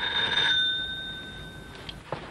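An electric doorbell rings once: a short burst of bell ringing that then fades away over about a second and a half.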